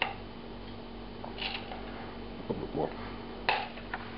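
A metal spoon tapping and clinking against a small ceramic mortar as whole peppercorns are spooned in: a click at the start, a brief rattle of peppercorns, and another click near the end.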